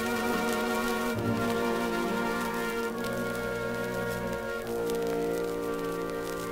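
A 1940s swing orchestra plays held chords that change about every one to two seconds. The crackle of a 78 rpm shellac record runs underneath.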